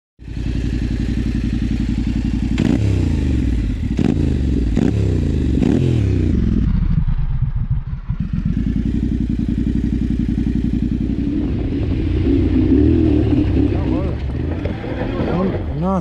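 Yamaha Ténéré 700 Rally's 689 cc parallel-twin engine running through an Akrapovič exhaust with the dB killer removed. It is blipped about four times in quick succession, each rev falling away, then settles to idle, with the revs rising again near the end.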